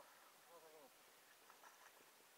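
Near silence, with one short, faint voice sound falling in pitch about half a second in and a few faint ticks near the end.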